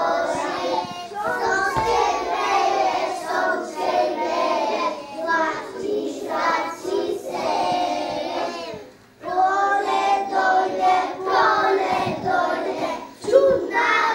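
A group of young children singing a song together. They break off briefly about nine seconds in, then carry on with the next line.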